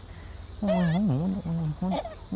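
Wordless voice calls that waver up and down in pitch, starting about half a second in, with a short call again near the end.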